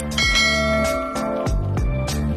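A bright bell-chime sound effect for a subscribe animation's notification bell being clicked, struck about a tenth of a second in and ringing out in under a second. It sits over background music with a steady beat.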